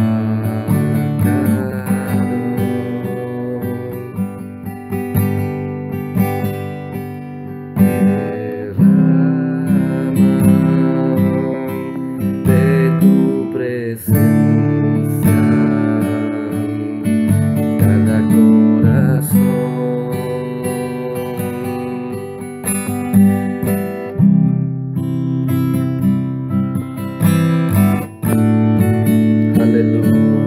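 Instrumental music: acoustic guitar strumming chords that change every second or two.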